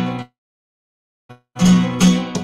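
Nylon-string classical guitar played flamenco-style in strummed chords: the sound cuts off abruptly about a quarter second in, there is over a second of dead silence, and then the strummed chords start again about 1.6 seconds in.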